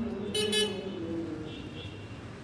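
A brief car-horn toot about half a second in, over voices in the background.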